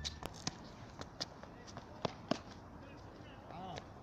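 Tennis ball struck by a racket and bouncing on a hard court, with light footsteps: a series of sharp knocks, the loudest about two and a quarter seconds in.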